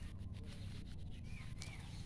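Outdoor ambience over a steady low rumble, with two short bird chirps about one and a half seconds in and a few faint clicks.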